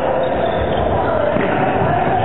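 Volleyball rally: the ball struck with a few dull thumps, over a steady din of shouting players and spectators.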